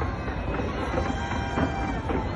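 Dense fireworks barrage: many bursts overlap into a steady rumble with crackling, with no single bang standing out.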